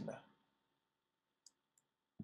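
Near silence, broken by one faint computer-mouse click about one and a half seconds in, advancing the lecture slide.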